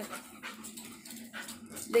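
A dog panting close by, soft breathy puffs between bits of speech.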